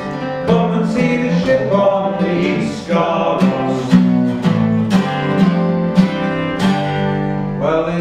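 Acoustic guitar strumming chords in a steady rhythm, an instrumental break between verses of a folk song.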